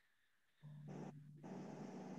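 Near silence, then from about half a second in a faint steady hum and hiss of an open microphone, with a brief faint breath-like puff about a second in.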